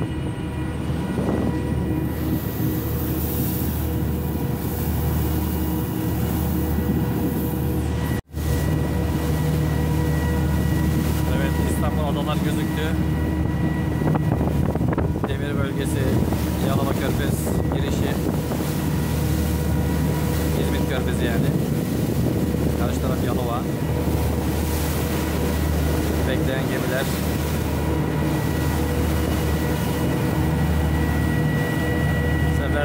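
Steady drone of a small ship's twin 540 hp Yuchai marine diesel engines under way, with wind buffeting the microphone. The sound cuts out completely for an instant about eight seconds in.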